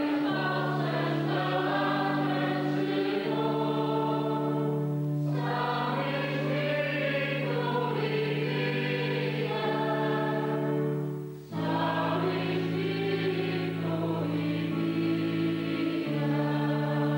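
Church choir singing a responsorial psalm at Mass, voices carried over long held keyboard chords. The singing pauses briefly between phrases about eleven seconds in, then carries on.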